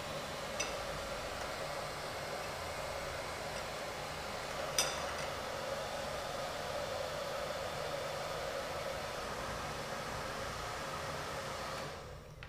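Hand-held hair dryer running steadily, blowing hot air onto ice cubes in a glass beaker to melt them. Two light clinks sound over it, a faint one about half a second in and a louder one near five seconds.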